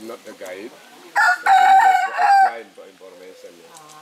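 A caged rooster crowing once, a loud call starting about a second in and lasting about a second and a half.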